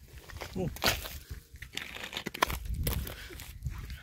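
Footsteps crunching in snow, with rustling and a few sharp crackles, denser in the second half.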